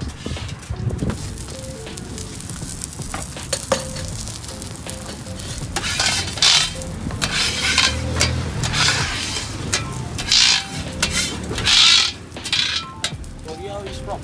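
Beef burger patty and buns sizzling on a hot flat-top griddle, with a metal spatula scraping across the plate several times in the second half.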